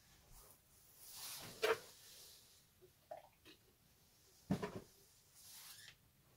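Two short knocks about three seconds apart, each with light rustling around it: small objects, such as a paint cup, being handled and set down on a covered work table.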